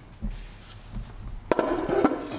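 Valve cover being pulled off a Detroit Diesel 8V92's cylinder head by hand: a low bump early on, then a sudden scraping metal clatter from about a second and a half in.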